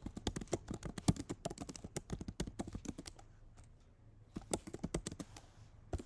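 Typing on a computer keyboard: quick runs of keystrokes, a pause of about a second a little past halfway, then a few more keystrokes.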